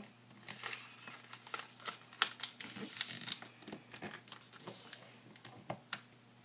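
A sheet of origami paper rustling and crinkling under the fingers as its side folds are pressed and creased, with scattered small clicks and taps at irregular intervals.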